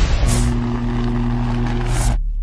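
Logo-intro sound effects: a whoosh just after the start, then a steady low engine-like hum of a few held tones, and a second whoosh near the end, after which the hum cuts off.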